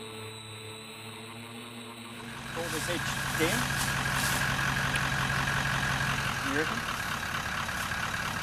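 Toyota 76 series four-wheel drive's engine running steadily at low revs as the vehicle sits flexed over a rock step, one front wheel off the ground. The engine comes in about two seconds in, with a few short voice sounds over it.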